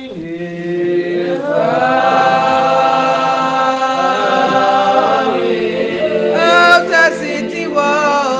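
A church congregation singing unaccompanied in long, drawn-out held notes, several voices in harmony, in the slow chanted hymn style of Spiritual Baptist worship. The voices swell about a second in, and a higher voice rises above the rest near the end.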